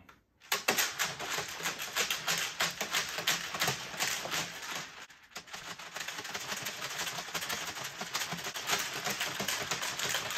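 Sealed plastic bucket of honey must with whole Kopi Luwak coffee beans inside being shaken hard, the beans rattling against the plastic like a giant maraca. A fast, dense clatter begins about half a second in, with a brief pause about five seconds in.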